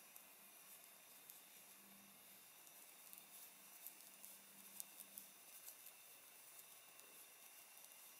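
Near silence: room tone, with a few faint ticks of knitting needles as stitches are worked.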